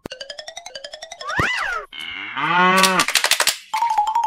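Cartoon-style sound effects: a rapid run of clicks rising in pitch, a whistle sliding up and back down, then a short cow moo about two and a half seconds in, followed by a quick run of clicks.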